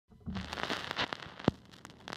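Title-intro sound effects: a crackling, hissing noise over a brief low rumble, with one sharp hit about one and a half seconds in, then dying away.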